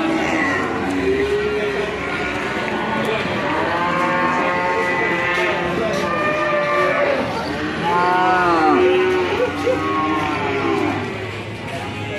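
Cattle mooing: many long, drawn-out calls overlapping one another, loudest about eight to nine seconds in.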